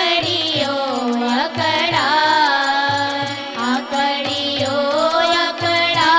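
Women singing a Swaminarayan devotional kirtan over an electronic keyboard, with tabla keeping a steady beat.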